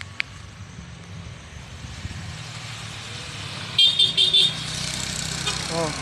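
Road traffic: a passing vehicle's low engine rumble that slowly grows louder, with a quick run of short high-pitched horn toots about four seconds in.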